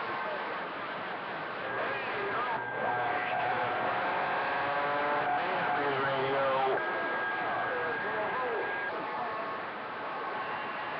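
CB radio receiver hissing with band static. Faint, garbled distant voices and steady whistling tones come and go through the noise.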